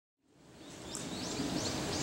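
Outdoor background noise fading in from silence, with a few short high bird chirps, about three in quick succession, in the second half.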